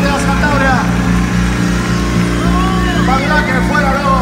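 Live rock band's electric guitars and bass holding a steady, loud low chord through the PA, with many crowd voices shouting over it.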